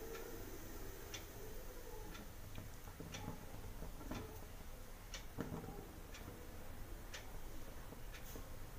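Low room tone with faint ticks, roughly one a second.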